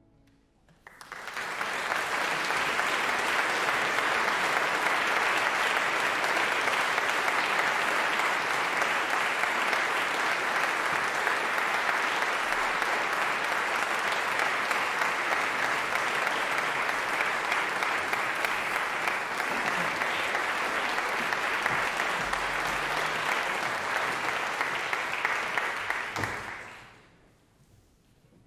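Concert audience applauding, steady and sustained, starting about a second in and dying away near the end.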